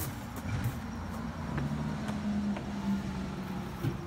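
Low engine hum of a motor vehicle, louder through the middle and easing near the end, with a few faint clicks.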